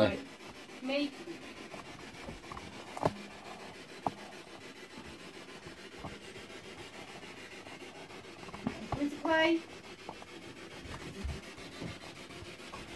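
Faint steady rubbing noise, with sharp clicks about three and four seconds in and two brief vocal sounds, one early and one later on.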